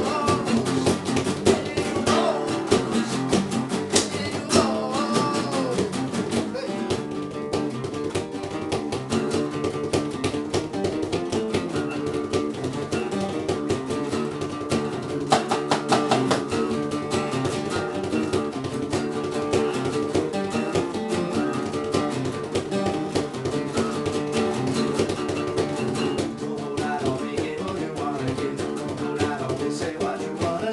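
Several acoustic guitars playing a rock song together, strummed and picked, with a bass line underneath.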